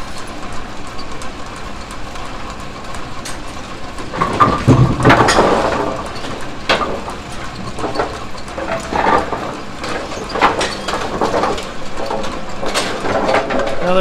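Brunswick Model A pinsetter running through a cycle: a steady motor hum with irregular metallic clanks and clicks from the rake linkage, cams and gearbox. The clanking is loudest and busiest about four to six seconds in.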